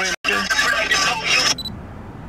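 Talking voices, broken by a short dead drop-out just after the start and cut off suddenly about one and a half seconds in. After that only quiet background noise remains.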